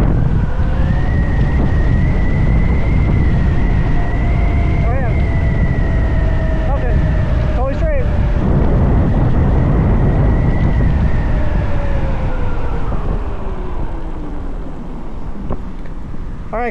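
Electric motorbike's 8-kilowatt motor whining as it speeds up toward 60 mph, holding pitch, then falling in pitch in the second half as the bike slows. Heavy wind rush on the microphone throughout.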